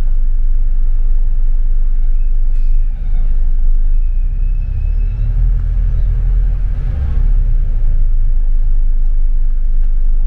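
Double-decker bus driving, heard from the upper deck: a steady low engine and road rumble that swells about halfway through, with a faint high whine briefly in the first half.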